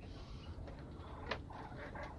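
Faint steady background noise with a single soft click about a second in, and a few faint soft sounds after it.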